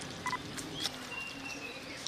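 Small animal sounds from feeding ring-tailed lemurs: scattered light clicks and a short chirp, then a faint, thin, high whistle held for most of a second that falls slightly.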